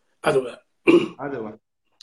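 A man clearing his throat: three short voiced bursts within about a second and a half.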